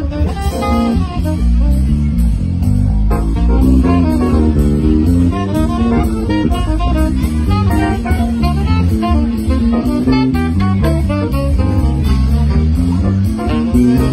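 Live band playing an instrumental number, electric guitar and saxophone over bass and drum kit with a steady beat.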